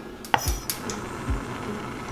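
A few sharp knife clicks on a wooden cutting board in the first second as garlic is minced, under soft background music with a low, regular beat.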